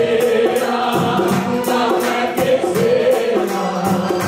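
Devotional bhajan sung by a man into a microphone over amplified music with a steady beat.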